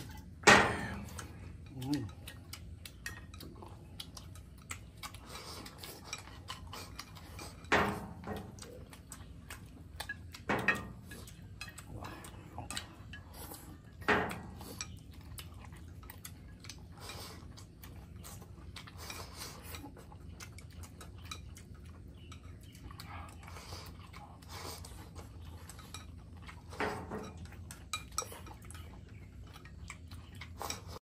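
Two people eating from ceramic bowls with chopsticks: small clicks and clinks of tableware. About six sharper knocks come through as bowls or bottles are set down on the wooden table.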